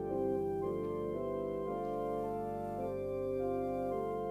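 Two-manual church organ playing a slow prelude: held chords that move every half second to a second over a sustained low bass note.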